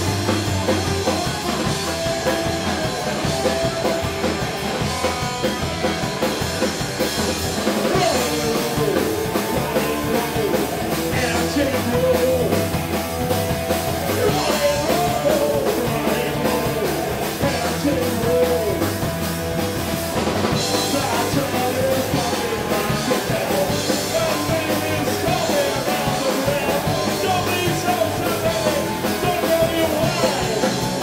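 Live punk rock band playing: distorted electric guitars and a drum kit at a steady loud level, with a singer's voice over the band.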